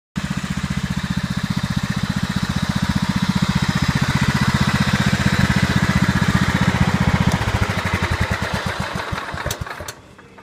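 Craftsman riding lawn tractor's Kohler Command engine running steadily, then shut off about seven seconds in, its firing slowing and dying away over about two seconds. A few sharp clicks come near the end.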